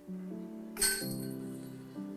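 Disc golf basket chains struck by a putted disc: one sharp metallic clink with a brief ringing jangle about a second in, over background music.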